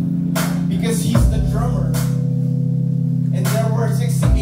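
Live band music in a small venue: a held low chord on bass and guitar, with drum hits shortly after the start and again near the end.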